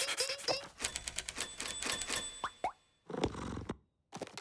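Cartoon sound effects: a quick run of plops and pops, then two short rising whistles and a brief final sound broken by moments of silence.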